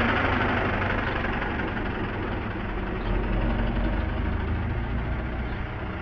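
A steady low rumble with an even hiss over it, like an engine running nearby, easing off slightly toward the end.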